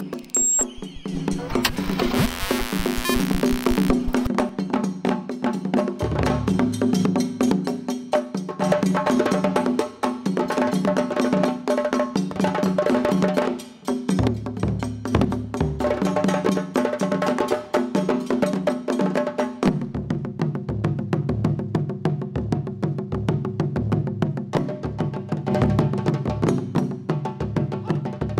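A short rushing noise in the first few seconds, then a percussion ensemble playing a fast, even rhythm on hand drums and stick-struck drums, with deep low drum notes under the sharp strokes.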